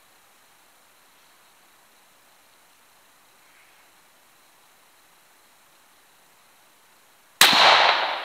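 A single shot from a Ruger M77 Gunsite Scout bolt-action rifle in .308 with 180-grain rounds. It comes suddenly and loud about seven seconds in, after faint outdoor background, with a long decaying tail.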